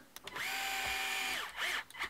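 Cordless power driver with a 2 mm hex bit driving in a small screw. It makes one run of about a second: the motor's whine rises as it spins up, holds steady, and falls as it stops.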